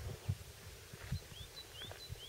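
A small bird chirping in a faint, quick series of short rising notes, starting about a second in, three or four a second. A couple of brief low bumps of wind or handling on the microphone come earlier.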